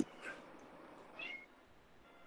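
Faint short animal calls in the background: a click at the start, then two brief high-pitched calls about a second apart.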